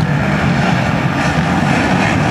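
Motocross race bikes' engines running on the circuit, a steady drone without a clear single pass.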